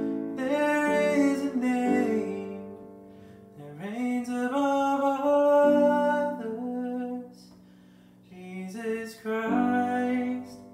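A man singing a slow worship song while accompanying himself on a Casio Privia digital piano: sustained piano chords under long, held vocal lines, in phrases with short breaths between them.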